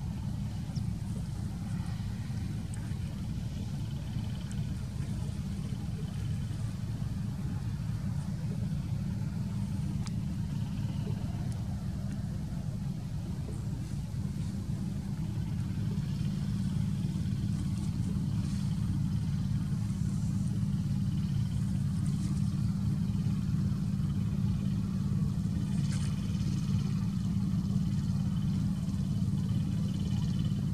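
A steady low rumble that grows a little louder about halfway through, with a few faint clicks above it.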